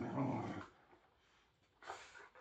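Whippet growling in play during a tug-of-war over a toy, fading out under a second in. A short sharp noise follows near the end.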